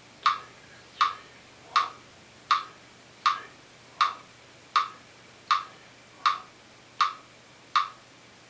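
Metronome clicking steadily at about 80 beats a minute, one sharp click every three-quarters of a second.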